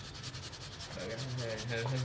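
A brush scrubbing across a refrigerator's printed circuit board in rapid, even back-and-forth strokes.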